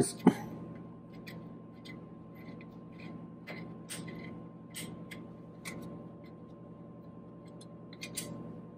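Faint, irregular metallic clicks of a hex key working the small bolts that hold a sheet-metal cover on a milling machine's power lift, over a faint steady hum.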